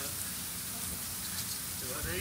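Steady low murmur of an audience in a hall, with a faint hiss and no clear words.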